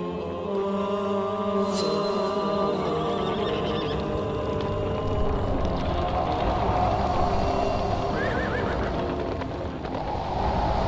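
Music with held, sustained tones, over which a rushing noise swells in the second half. A horse whinnies once, about eight seconds in.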